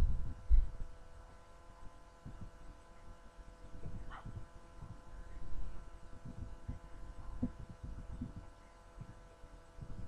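A quiet room with a steady faint electrical hum and irregular soft, low thumps and rustles as people shift about on the floor.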